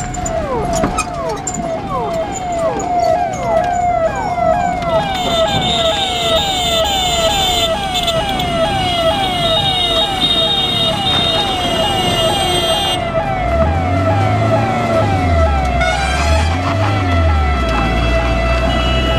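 Ambulance siren sounding a fast, repeating falling sweep, about two to three sweeps a second. Near the end a low hum rises and falls alongside it.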